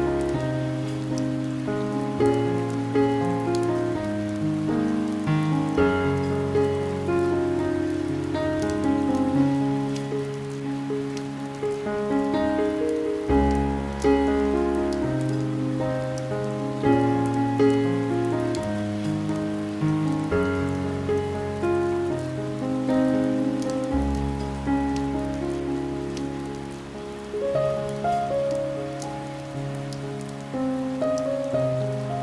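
Calm piano music, its low bass notes held for a couple of seconds each, over a steady sound of rain pattering on a window.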